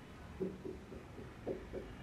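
Dry-erase marker scratching short hatching strokes on a whiteboard, a quick run of about four strokes a second that starts about half a second in.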